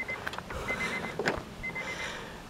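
Honda Accord wagon's warning chime beeping with the driver's door open: short runs of rapid high beeps, about one run a second. A light click comes a little after a second in.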